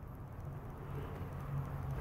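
Steady low hum over a faint even background noise, with no distinct knocks or clicks: the room tone of a garage.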